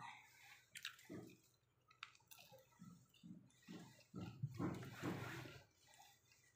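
Quiet, irregular chewing and mouth sounds of someone eating chatpate, a spicy puffed-rice snack.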